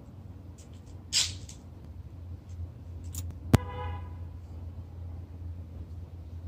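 Street background with a steady low traffic hum. A short hissing burst comes about a second in, and near the middle a sharp click is followed by a brief car horn toot.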